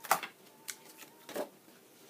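Clear plastic stamp sheets and cardstock being handled: three brief rustles, one near the start, one in the middle and one toward the end.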